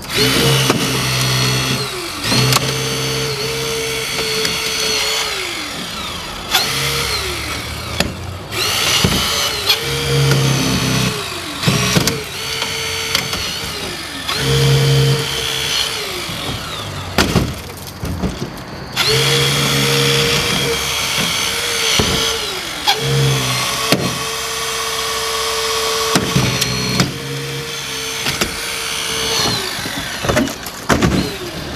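Battery-powered hydraulic rescue spreader forcing open a car door. Its motor runs in repeated strokes a few seconds long, the pitch sagging under load and picking up again, with brief stops between. Sheet metal creaks, squeals and pops as it gives.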